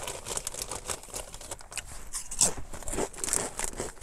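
Ruffles Flamin' Hot BBQ ridged potato chips being chewed, with the foil chip bag crinkling: irregular crackly crunches and rustles.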